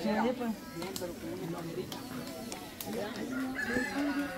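A rooster crowing near the start, over the chatter of a crowd of children and adults.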